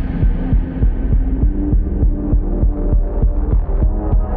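Electronic synthwave track with a low-pass filter sweep. The mix sounds muffled, with a steady pulsing kick drum and deep bass under dull synth chords, and the top end gradually opens back up near the end.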